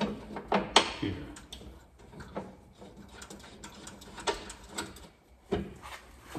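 Irregular clicks and knocks of metal hardware and the table panel being handled against a Jeep Wrangler's steel tailgate as a bolt is set into a threaded hole, the sharpest knock near the start.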